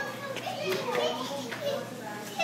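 Children's voices chattering and calling out, with a faint steady low hum underneath.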